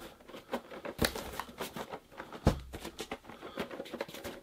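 Small cardboard shipping boxes being handled and shaken, with the boxed vinyl figure inside shifting and knocking against the walls. A scatter of light taps and rustles runs through it, with two louder knocks about a second in and about two and a half seconds in.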